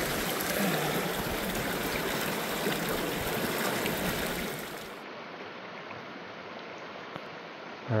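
Small mountain creek running close by, a steady rush of water that drops to a quieter, duller wash about five seconds in.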